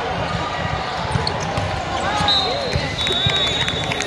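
Volleyball rally in a gym: the ball struck by hands and arms in a few sharp hits, with voices of players and spectators throughout.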